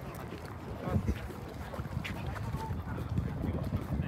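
Outdoor crowd ambience: wind on the microphone with scattered, indistinct voices of passers-by.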